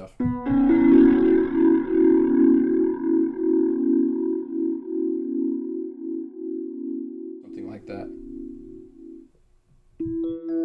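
Organ chord from a Nord Electro 5D played through an Electro-Harmonix Lester K rotary speaker pedal, held for about nine seconds with an even rotary wobble, then released.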